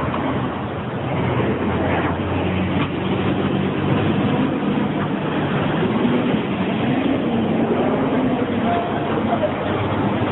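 A car running nearby: a steady, loud rumble of engine and road noise.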